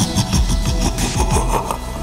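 Mechanical clicking and whirring over a low rumble: a sound effect for a robot endoskeleton's servos and metal joints as it moves.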